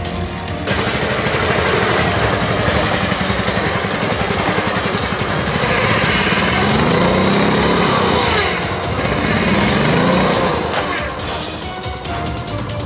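Riding lawn mower's small engine running as the mower is driven, revving up and down between about six and ten seconds in. Background music at the start and again near the end.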